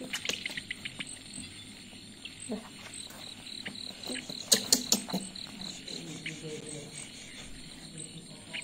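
Crickets chirping in a steady pulsed rhythm in the background, with short crackles and clicks from a disposable diaper being handled and fastened, loudest about four and a half seconds in.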